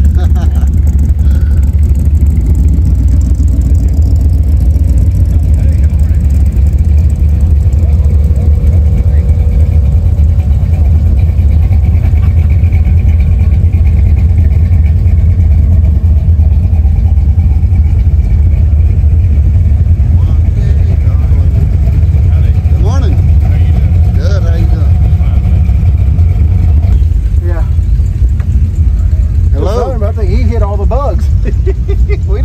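Car engines idling close by: a steady, loud, low rumble with no revving, and faint voices in the background.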